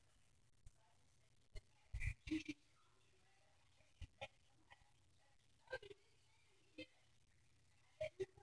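Near silence from a Harbor Breeze ceiling fan running on low, with a faint steady hum and a few scattered faint clicks and creaks.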